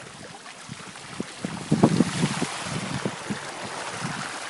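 Floodwater splashing and rushing as a bicycle rides through a flooded street, with wind buffeting the microphone. A burst of low buffeting and splashing about two seconds in is the loudest part.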